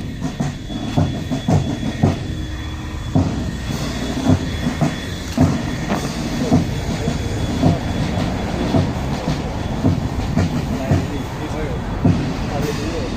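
A large column of Royal Guard soldiers marching in step on asphalt, their boots striking together in a steady rhythm with a heavier beat about once a second and lighter steps between.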